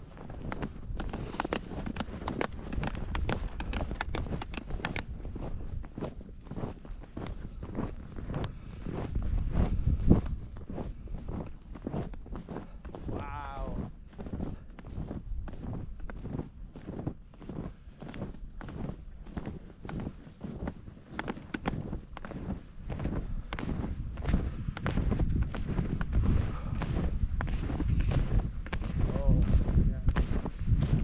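Snowshoes crunching through deep snow in a steady rhythm of footsteps, several a second, as the wearer walks downhill. Wind rumbles on the microphone throughout, strongest about ten seconds in.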